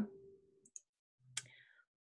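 Two faint computer mouse clicks over near silence: a soft one under a second in and a sharper one about a second and a half in.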